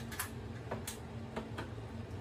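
Light, irregular clicks and ticks of hands working on the plastic housing below a wall-mounted air conditioner, some in quick pairs, over a steady low hum.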